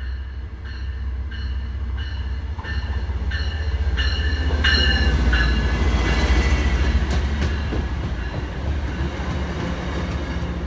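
MBTA commuter rail diesel locomotive passing close by, its bell ringing about every two-thirds of a second through the first half. The engine rumble builds to its loudest about five to seven seconds in as the locomotive goes by, then passenger coaches roll past with wheels clacking over the rail joints.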